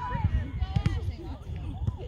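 Scattered voices of players and spectators calling out across an open soccer field during play, over an uneven low rumble. A couple of short sharp knocks sound a little under a second in.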